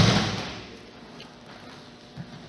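Two judo players landing together on a padded judo mat at the end of a rolling throw. A heavy thud right at the start fades within about half a second into soft, low scuffing as they move on the mat.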